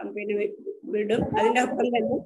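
Speech: a person talking over a video call, in short phrases with a brief pause near the middle.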